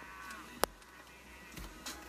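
Faint bass-heavy music from a car audio system, with a single sharp click about a third of the way in.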